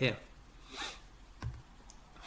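A short breath from the lecturer at a close microphone about a second in, then a brief soft knock.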